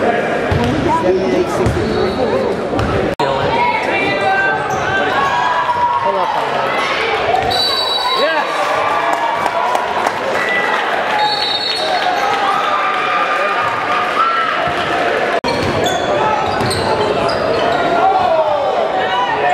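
Basketball game in a gym: a basketball bouncing on the hardwood court and short high sneaker squeaks over steady crowd chatter echoing in the hall. The sound cuts out sharply twice, about three seconds in and again near the end.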